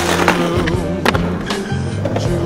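A song plays over skateboard sounds: urethane wheels rolling on concrete and a few sharp clacks of the board hitting a concrete ledge.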